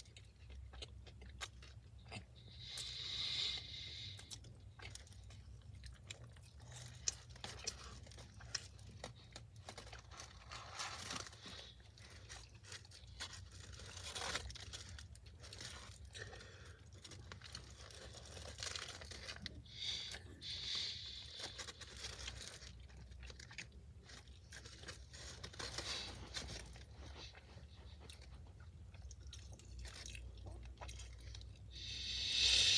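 Close-up chewing and crunching of a breaded chicken sandwich, with a few rustles of its foil wrapper, over a low steady hum.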